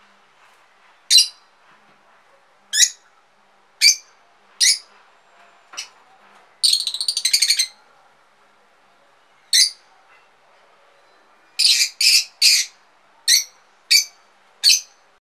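Rosy-faced lovebird giving short, shrill, high-pitched calls, one every second or so. Near the middle comes a rapid chattering run of notes lasting about a second, and near the end three calls in quick succession.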